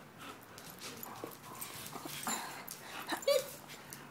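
A long-haired German Shepherd mouthing and tugging at a rubber squeaky toy, with a short, high squeak a little after three seconds in.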